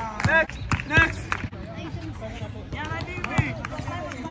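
Raised voices calling out on an outdoor basketball court, with a few sharp thumps of a basketball bouncing on the court surface.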